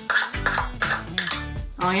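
Background music playing.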